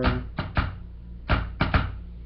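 Sharp taps and clicks of cards and hands on a wooden tabletop, about six in two quick groups, over a low steady hum.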